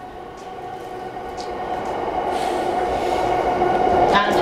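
Running sound of a JR East E233 series electric train heard from inside a motor car: a steady hum and rail noise that grow steadily louder.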